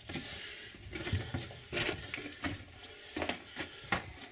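Footsteps crunching on the rocky floor of a mine tunnel at a steady walking pace, roughly three steps every two seconds, over a faint hiss.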